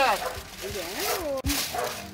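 A dog vocalising: several short calls that rise and fall in pitch.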